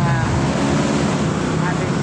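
Steady roadside traffic noise: a continuous low engine hum under a constant rush, with brief snatches of voices.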